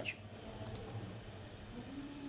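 A few faint, quick clicks a little under a second in, over a low steady room hum.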